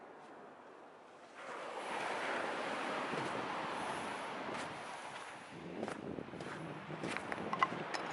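Surf washing on a sandy shore with wind on the microphone, the noise rising sharply about a second and a half in. Near the end a few sharp clicks and crunches stand out over it.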